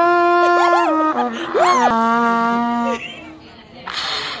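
Trumpet blown by a beginner: a few long held notes that step down in pitch and stop about three seconds in, with laughter over them.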